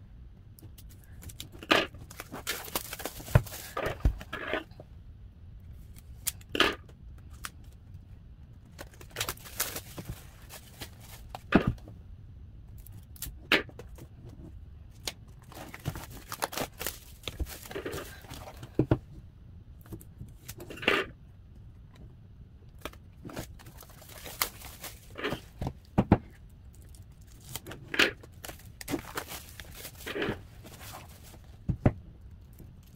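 Plastic shrink wrap being torn and peeled off album packaging, crinkling in irregular rustles, with sharp clicks and taps of the album cases being handled on a table.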